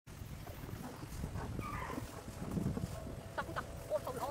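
A low outdoor rumble, with a few short animal calls, faint around the middle and clearer near the end.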